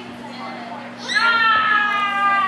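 An excited cheering shout starts about a second in and is held long, its pitch falling slowly. Under it runs a steady low hum.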